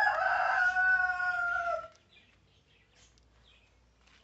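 A rooster crowing: one long held call that sinks a little in pitch and stops about two seconds in.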